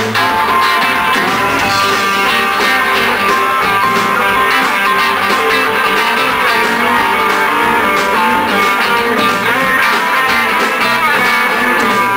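Live rock band playing an instrumental stretch: an electric guitar line with bent notes over bass and drums.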